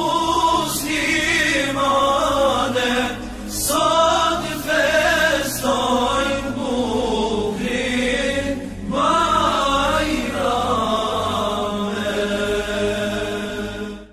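Chanted Islamic vocal music, melismatic voices carrying a steady chant that fades out at the very end.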